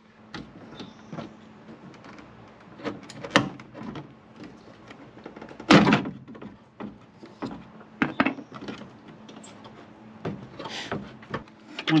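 Scattered knocks and clunks as a 2021 Ram Power Wagon tail light is worked loose and pulled straight back out of its mount. The loudest clunk comes about six seconds in.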